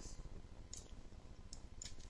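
Three short clicks of a computer mouse, the last two close together, over a faint steady hiss.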